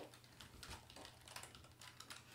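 A quick run of faint keystrokes on a computer keyboard as a password is typed into a login prompt.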